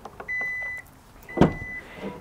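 Hyundai Santa Fe power tailgate warning chime: two steady high beeps, each about half a second long and about a second apart, as the tailgate unlatches to open. A short thump falls between the beeps.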